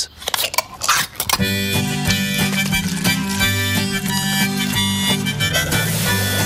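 A few short metallic clicks as the pull-tab lid of a can of green beans is opened, then harmonica music starts about a second and a half in.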